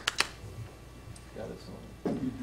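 The last few claps of a small audience's applause, ending just after the start, then a quiet room with a faint murmur of voices.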